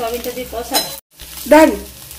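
A metal spatula stirring and scraping lentils and soya chunks around a metal pan while they sizzle in oil, the scrapes squealing in short pitched strokes, the loudest about one and a half seconds in. The sound drops out for a moment about a second in.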